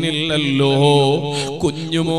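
A man chanting in a drawn-out melodic voice, holding long notes whose pitch wavers, with a short break in the middle.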